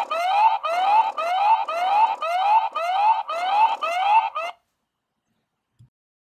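Aqara HomeKit hub's built-in alarm siren ('safety accident' sound), set off by opening the paired Zigbee door and window sensor: a rising whoop repeated about twice a second. It cuts off suddenly about four and a half seconds in.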